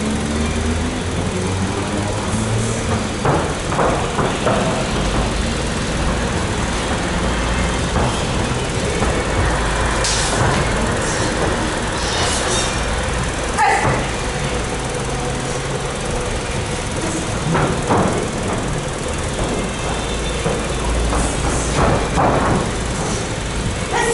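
A steady low rumble of background noise, with scattered dull thuds and scuffs from Muay Thai clinch work: knees landing on the body and bare feet shifting on the ring canvas.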